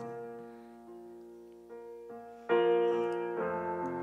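Piano-voiced chords played on a Yamaha electric stage keyboard, soft and slow and changing every second or so. A louder chord is struck about two and a half seconds in and rings out.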